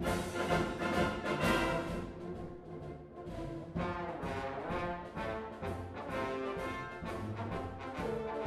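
Four trombones playing a featured passage together, with a wind band accompanying. There are strong accented chords at the start, a softer stretch near the middle, then a fuller sound again.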